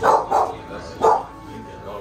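A dog barking three short times in quick succession, two close together and a third about a second in.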